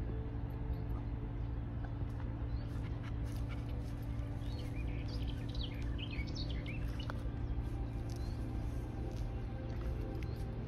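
Small birds chirping in a short run of quick rising and falling calls, thickest from about four to seven seconds in, over a steady low hum.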